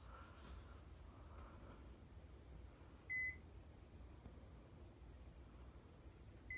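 Near silence with a faint low hum while the ceiling fan coasts down. One short, high electronic beep sounds about three seconds in.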